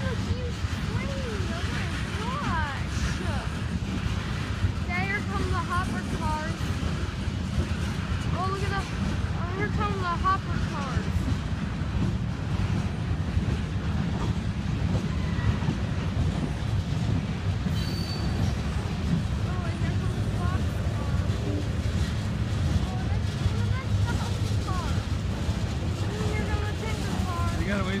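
Freight cars of a long mixed train (covered hoppers and tank cars) rolling past: a steady low rumble of steel wheels on rail.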